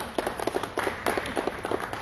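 A small congregation clapping, individual claps audible in a steady patter, as applause for a choir that has just finished singing.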